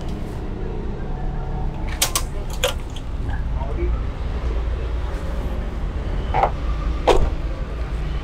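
Sharp clicks from a 2001 Daihatsu Taruna's door locks worked by the alarm remote key: two close together about two seconds in and another just after, then two more near the end, over a steady low hum.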